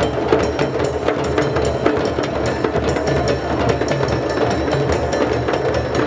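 A group of djembes played together by hand in a drum circle: a dense, steady rhythm of hand strokes that keeps going without a break.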